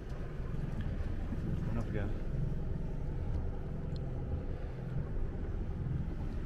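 The sailing yacht's inboard engine running steadily as the boat motors in, a low even drone.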